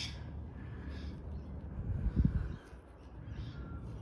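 Faint short bird calls, perhaps a crow, over a steady low rumble, with a single dull thump about two seconds in.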